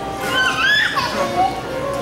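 Children's high voices calling out with rising and falling pitch for about a second, over a gymnast's floor-exercise music playing steadily.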